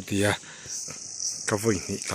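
Insects chirring in a steady, high-pitched drone that comes in under a second in, with short snatches of voice around it.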